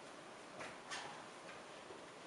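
Two short clicks, about a third of a second apart, over a steady hiss of room noise.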